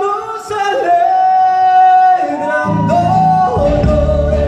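A male singer holds long wavering notes over acoustic guitar, live through a PA system. About three seconds in, the band's low bass comes in under the voice.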